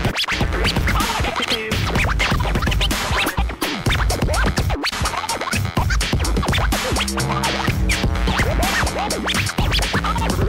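Turntable scratching over a hip hop beat: a record is dragged back and forth under the needle in quick swooping pitch sweeps, cut against a steady low bass line and drum hits.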